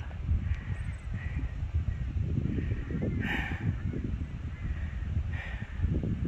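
Wind buffeting the microphone with a steady low rumble, while a crow caws two or three times, loudest about three seconds in.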